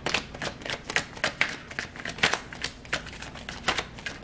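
Tarot deck being shuffled by hand: a quick, uneven run of card clicks and slaps.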